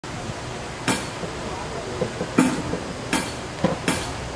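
Drumsticks clicked together to count the band in: four sharp clicks, the last three evenly spaced about three-quarters of a second apart, over low murmuring voices.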